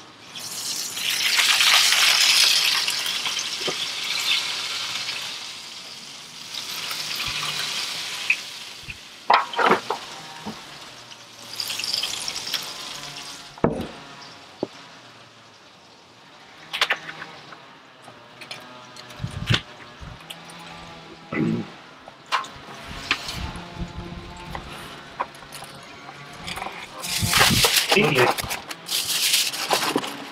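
Aluminium foil pan and sheet foil crinkling as a smoked pork shoulder is taken out of the smoker, set in the pan and wrapped, with scattered knocks and clicks from handling. The longest crinkling comes in the first few seconds and again near the end.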